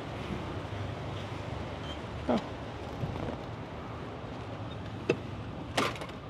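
Steady low background hum, broken by a few short clicks and knocks as a door's lever handle and latch are worked and the door is opened and passed through.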